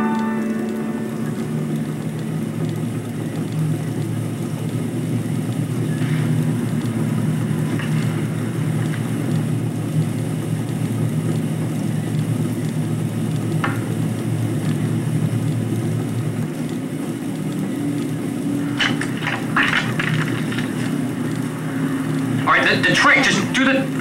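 A steady low rumble and hum with a few faint ticks, just after a piano phrase ends. Brief voices come in from about 19 seconds and again near the end.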